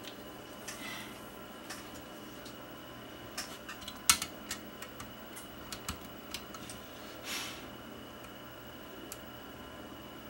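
Scattered small clicks and taps as oscilloscope probe tips and hook clips are handled against a video deck's test-point pins and metal chassis, the sharpest click about four seconds in, with a soft brief rustle later on. A faint steady high whine sits underneath.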